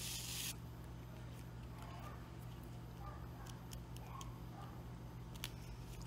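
Faint rustling and light scraping of grosgrain ribbon and thread as a needle is drawn through for a hand-sewn running stitch, with one sharp click about five and a half seconds in, over a steady low hum.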